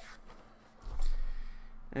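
Handling noise of a boxed Funko Pop vinyl figure being lifted out of a cardboard shipping box and turned over in the hands: light rustling, with a dull thump about a second in.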